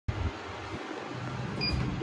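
Steady background hum in a lift, then one short electronic beep about one and a half seconds in, the lift button panel acknowledging a floor call.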